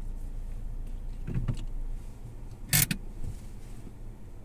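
Steady low hum inside a car cabin, with a short sharp knock near three seconds in, the loudest sound here, and a softer rustle about a second and a half in.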